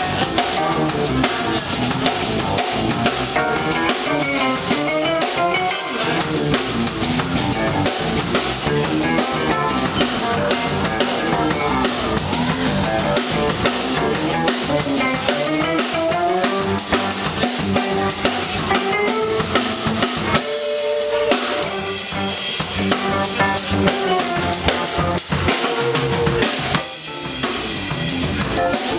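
Live rock band playing an instrumental funk piece: electric guitar and bass lines over a busy drum kit with snare, rimshots and bass drum. The drums and low end cut out for a moment twice near the end.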